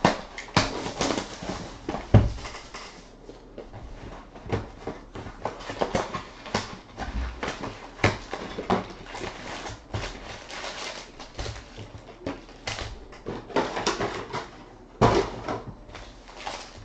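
A cardboard hobby box of baseball card packs being opened and the foil-wrapped packs pulled out and stacked on a tabletop: irregular rustling, scraping and light knocks, with a sharper knock about two seconds in.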